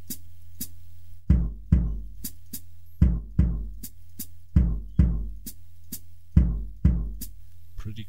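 A sampled acoustic kick drum and hi-hat pedal from a VST drum plugin, played back as a loop through a drum rack. Pairs of deep kick hits come about every second and a half, with short, crisp hi-hat chicks between them.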